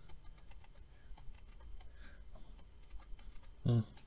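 Faint, irregular clicking of a computer mouse and keyboard being worked at a desk, with one short spoken word near the end.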